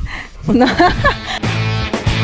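A man says "no" and laughs. About a second and a half in, background music with guitar starts.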